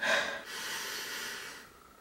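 A person drawing a long sniff in through the nose, a breathy hiss of about a second and a half that is strongest at the start and tails off.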